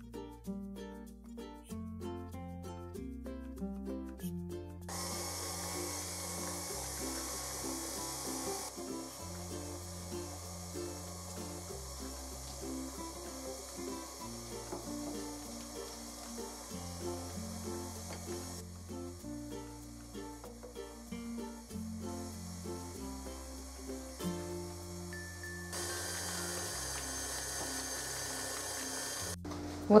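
Background music with a stepping bass line, over an electric stand mixer whipping cream cheese and white-chocolate ganache into a cake cream. The mixer's hiss comes in about five seconds in, fades for a while, and is loudest again near the end.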